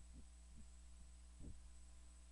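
Near silence: a steady low electrical hum in the recording, with a few faint soft low thumps.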